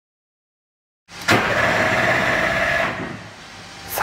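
Race car engine running at steady high revs. It starts suddenly about a second in, holds for about a second and a half, then falls away to a lower rumble. A short click comes just before the end.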